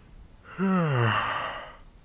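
A man's voiced sigh, its pitch falling steadily over about a second.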